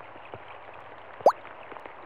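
Cartoon rain sound effect, a steady hiss, with one short, loud rising 'bloop' about a second in as a raindrop drops in.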